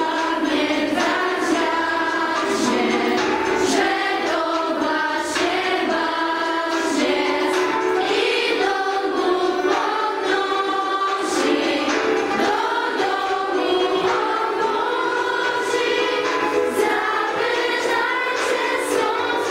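A group of teenage girls singing a song together in Polish, the voices continuous throughout.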